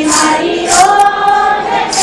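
A group of voices sings a Hindu devotional bhajan together, holding a long note from about half a second in.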